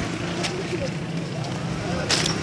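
Street background noise: a steady low hum under a general hiss, with a faint click about half a second in.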